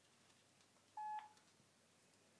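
A single short electronic beep about a second in, one steady tone lasting about a quarter of a second and ending with a faint click.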